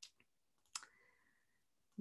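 Near silence broken by a few faint, sharp clicks: one right at the start, a fainter one just after, and the loudest a little under a second in.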